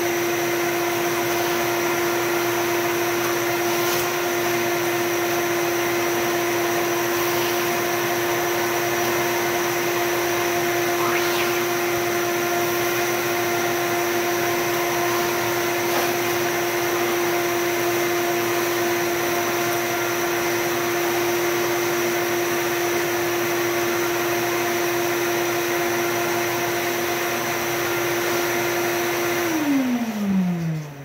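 Shop vacuum running steadily with a high motor whine as its hose sucks dirt from a garden tractor's frame. Just before the end it is switched off and the motor's pitch falls as it spins down.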